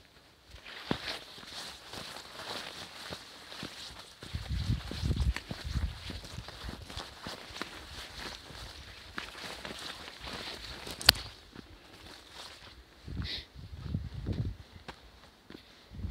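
Footsteps of a hiker walking a forest trail, with leaves and branches brushing past, a sharp click about eleven seconds in, and low thumps on the microphone around five and fourteen seconds in.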